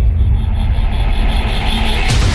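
Deep, steady low rumble from a cinematic logo-animation soundtrack, its upper range muffled during the transition between title cards, with a sharp boom hitting at the very end.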